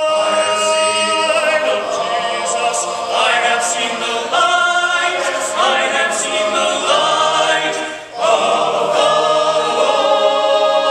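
Men's barbershop chorus singing a cappella in close four-part harmony, with a trio of featured voices in front of the full chorus. The singing dips briefly about eight seconds in, then the voices come back in together.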